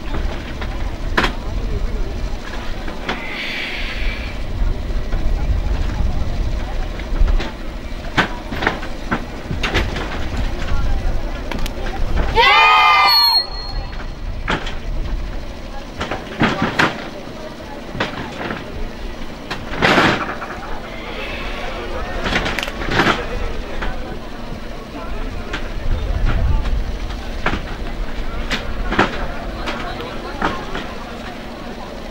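Scattered sharp knocks and slaps from a group of students performing a karate routine on a stage, over a steady low rumble and background voices. One loud rising shout comes about twelve seconds in.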